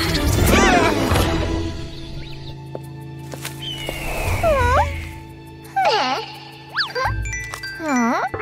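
Cartoon soundtrack music over a steady low sustained tone, with several short swooping pitched sounds on top: one about a second in, more around the middle, and a few in quick succession near the end.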